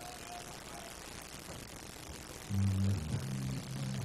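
Faint steady background hiss, then about two and a half seconds in, music starts up louder: low held notes that change pitch every half second or so.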